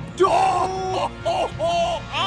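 A man's pained, alarmed cries, several short yells in a row, as a snapping turtle he is holding strikes at his face.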